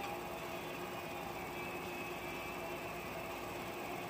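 A steady hum with a constant low tone and an even hiss, which fits a wall-mounted window air conditioner running.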